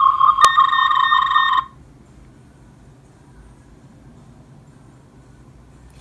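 Star Trek TNG tricorder prop's electronic scanning sound effect: a rapidly pulsing beep tone with a sharp click, cutting off about one and a half seconds in, followed by faint room hiss.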